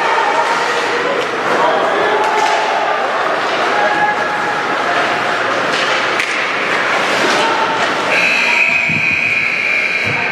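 Ice hockey rink sound during play: spectators' voices echoing in the arena, with scattered knocks of sticks, puck and boards. About eight seconds in, a long steady high-pitched signal sounds for about two seconds as play stops.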